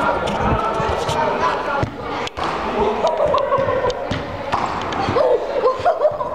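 Voices talking in a large indoor sports hall, with repeated dull thuds of a football bouncing and a single sharp knock a little over two seconds in.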